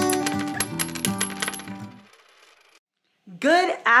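The end of an intro jingle: guitar music topped by a bright, tinkling chime effect with a thin high ring, fading out about two seconds in. After a brief silence a woman starts talking near the end.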